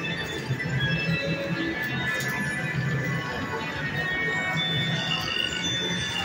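Buffalo Gold Revolution slot machine playing its free-games bonus music, a pulsing low beat under high chiming tones, while the reels spin and wins add up.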